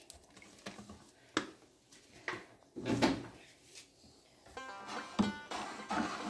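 Scattered light knocks and clatter of plastic bottles and a wooden stirring stick against a plastic bucket as oil is poured in and stirring begins. A brief rasping creak is heard about five seconds in.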